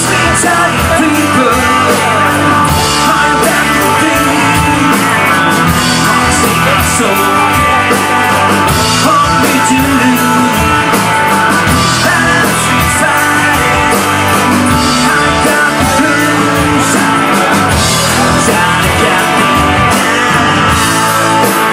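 Southern rock band playing live and loud: distorted electric guitars over bass and a steady drum beat with cymbal hits.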